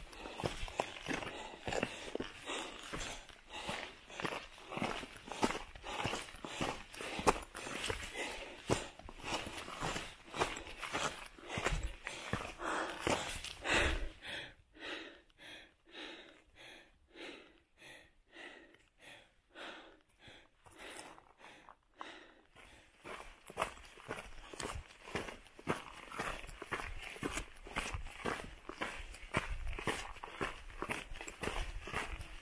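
Footsteps of a hiker on a rocky granite trail, a steady run of crunching steps at a walking pace, fainter for several seconds in the middle.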